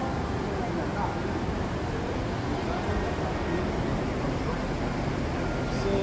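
Indistinct, distant talk between two men, a mechanic explaining to a customer, over a steady low rumble of workshop background noise.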